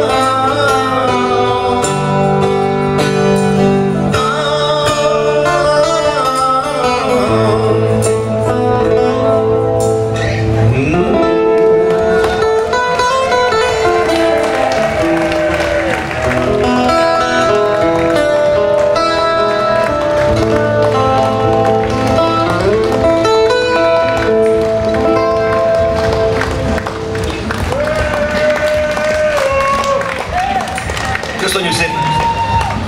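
Live rock band playing a song in an acoustic set, guitar to the fore over held low bass notes, with a man singing, picked up by a camcorder's microphone in the audience.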